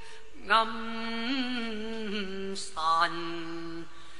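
Cantonese opera singing: a singer draws out a long wavering note, then a second, lower held note about three seconds in, with short breaks between them.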